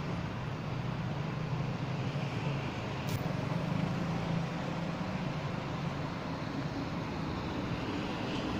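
Steady engine drone of construction-site machinery, with one short sharp click about three seconds in.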